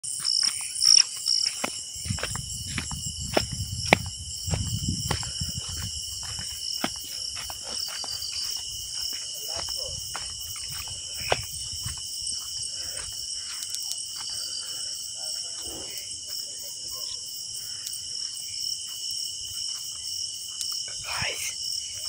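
Night insects, crickets, chirping in a steady, high, rapidly pulsing trill. Sharp clicks and knocks are scattered through the first half, and a low rumble of handling noise comes a couple of seconds in.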